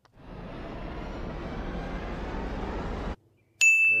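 A steady rushing noise, like wind on the microphone, for about three seconds, which cuts off suddenly. Then, near the end, a sharp metallic click with a clear ringing tone that lingers: a putter striking a golf ball on a putt.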